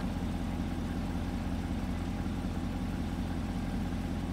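A vehicle engine idling steadily, a low, even hum with no change in speed.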